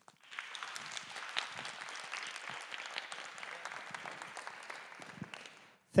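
Audience applauding: a steady patter of many hands clapping that starts just after the opening and stops near the end.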